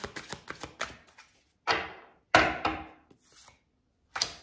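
A deck of tarot cards being shuffled by hand with quick light clicks, then two sharp knocks about two-thirds of a second apart as the deck is knocked on a wooden tabletop, each dying away.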